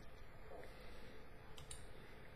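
Quiet room tone with a few faint, short clicks, two of them close together about a second and a half in.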